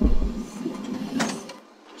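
A short deep rumble, then a single sharp click a little after a second in.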